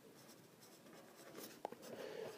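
A pencil writing on paper, faint scratching strokes with small ticks, mostly in the second half.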